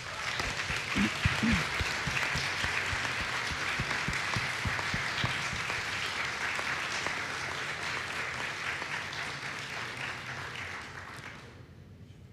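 Audience applauding, starting straight away and fading out over the last couple of seconds.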